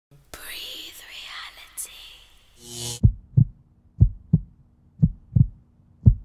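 Produced intro of a garage track. For about three seconds it is breathy, whisper-like noise that swells just before the three-second mark. Then come heartbeat-like double thumps, lub-dub, about one pair a second, over a low steady hum.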